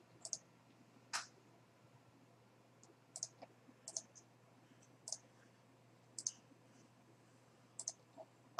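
Faint computer mouse button clicks, scattered and irregular, several in quick pairs, over a low steady hum.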